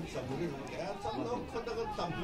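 Spectators chatting, several voices talking over one another.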